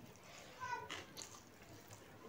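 Mouth sounds of a person eating rice and beef by hand, with soft smacking clicks, and a short high-pitched cry about two-thirds of a second in.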